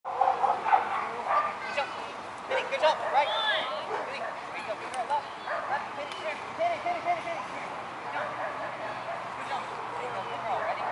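A corgi barking and yipping over and over in short, quick calls, excited while running agility, with voices underneath.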